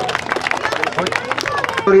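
A crowd applauding: many quick, overlapping hand claps.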